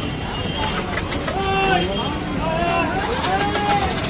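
People talking around a busy street food stall over a steady low rumble of street traffic, with short crackles of plastic carry bags being handled, more of them in the second half.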